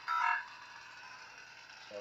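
ProffieOS lightsaber sound board playing the Kylo Ren unstable blade hum through the hilt speaker, with a short, bright multi-tone sound effect just after the start.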